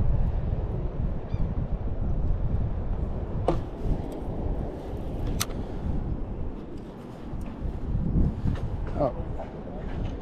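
Wind buffeting the microphone as a low rumble, strongest at first and easing off, with two sharp clicks a few seconds in.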